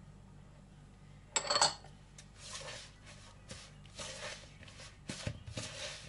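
A metal spoon stirring and scraping a stiff flour, water and oil mixture in a plastic bowl, in a series of soft rasping strokes, with a sharp ringing clink about a second and a half in.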